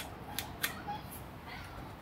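A few sharp, light clicks in the first second, then faint handling noise: hands working the minibike's handlebar and controls.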